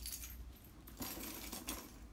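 A bunch of house keys with an acrylic keychain clinking and jingling as they are handled, with a few sharp clicks at first and a denser rattle about a second in.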